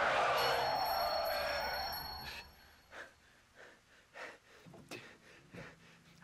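A sound effect from the anime's soundtrack: a loud rushing noise with thin high whines over it, fading out over about two and a half seconds, followed by a few faint soft clicks.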